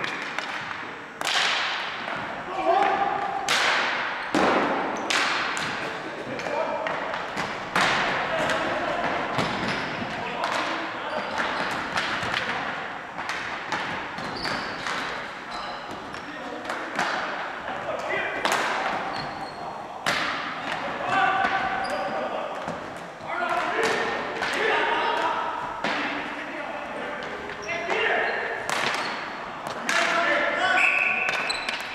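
Ball hockey sticks striking the ball and the hardwood gym floor during play: a steady run of sharp, irregular clacks and slaps, each echoing in the hall, with scattered shouts from the players.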